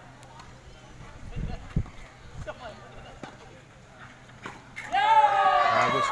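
Tennis rally on an outdoor court heard faintly, with a few sharp racket-on-ball strikes over low background chatter. About five seconds in, a man's voice calls out loudly.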